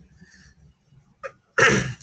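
A short, sharp, breathy burst from a man near the end, after a mostly quiet stretch.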